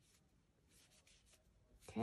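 Near silence with faint, soft rubbing of yarn as a crochet hook works single crochets. A woman's voice begins right at the end.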